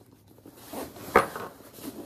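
Handling noise from a hand rummaging inside a tote bag: faint rustles, with one sharp knock a little over a second in.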